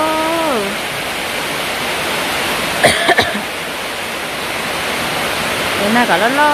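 A steady rushing noise. A voice trails off in the first moment, and a short cough comes about three seconds in.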